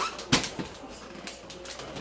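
A wrapped gift box thumps once onto a wooden floor about a third of a second in, followed by faint rustling and handling of the wrapping paper.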